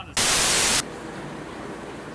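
A burst of loud white-noise static, cutting in sharply just after the start and off abruptly about two-thirds of a second later, marking the cut between two clips. A steady low hiss follows.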